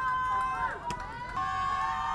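Spectators cheering a base hit with long, drawn-out shouts, several voices overlapping. There is one sharp click about a second in.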